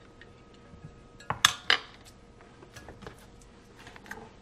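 A few clinks and knocks of a fork and fish fillets against a glass bowl, the loudest two or three close together about a second and a half in.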